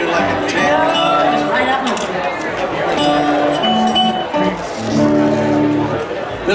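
A live band's instruments, guitar among them, sound a few short held notes, with voices talking over them.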